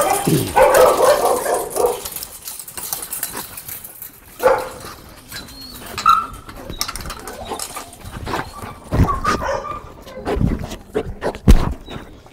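An excited dog whining and barking in short calls as it jumps up on a person. Knocks and clanks from a chain-link gate come throughout, and several heavy thumps of contact fall near the end.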